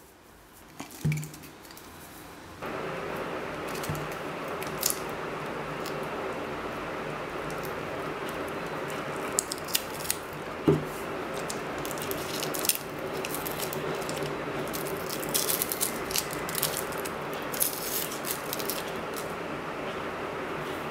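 Small clicks and crinkles of tape and thin enamelled copper magnet wire being handled as a hand-wound coil is worked off a cylindrical can, with one louder knock about 11 seconds in. A steady background hiss with a low hum starts abruptly about two and a half seconds in.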